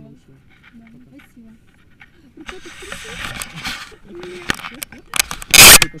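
Faint low voices, then rustling and clicking on the camera's microphone from about halfway, ending in one loud, short burst of noise shortly before the end.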